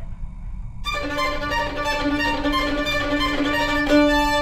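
Solo violin, bowed, starting about a second in with a fast, flashy passage: a low note held underneath while the higher notes change.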